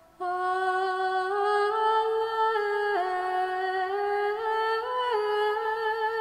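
A solo female voice singing Latin Gregorian chant unaccompanied: one sustained melodic line moving in small steps between held notes. It enters just after the start, following a brief silent pause.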